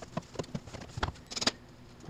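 Light plastic clicks and taps from the air filter box lid being handled and fitted back in place, with a sharper knock about halfway through and a quick run of clicks soon after.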